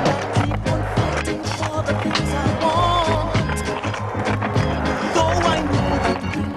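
Music soundtrack with a steady beat, over a skateboard rolling on pavement and clacking as it is popped and landed.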